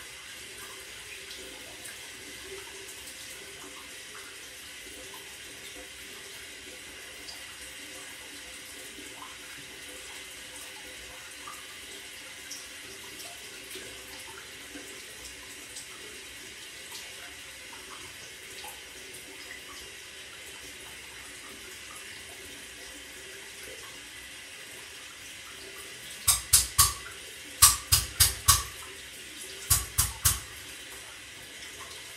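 Water running steadily in a bathroom, with faint small splashes. Near the end comes a quick run of about eight sharp, loud knocks.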